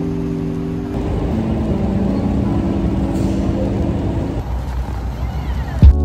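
Steady low rumble of city street traffic under soft, held notes of background music that fade out about four and a half seconds in. A single loud, deep thump comes just before the end.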